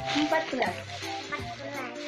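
Crinkling of small clear plastic packaging bags being handled, over background music with a short melody that repeats about every one and a half seconds.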